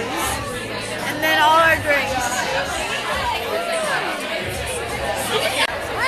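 Many people talking at once in a crowded room, a dense chatter of overlapping voices, with music playing underneath.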